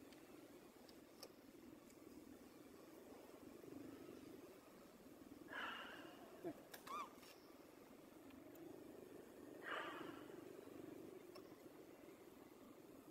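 Faint cries of a newborn macaque over a steady low hum: two short breathy cries, about five and a half and ten seconds in, with a brief squeak between them.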